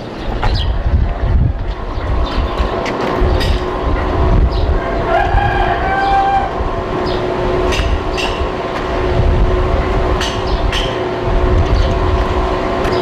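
A small motor scooter's engine running with a steady hum over low rumbling road noise, with a few clicks and a brief higher tone about five seconds in.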